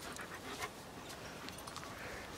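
German Shepherd panting, faint.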